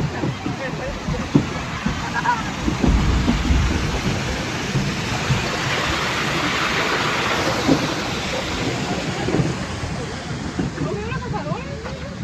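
Wind buffeting a phone microphone outdoors: a steady rushing hiss that swells in the middle, with a heavy low rumble about three seconds in, and faint distant voices.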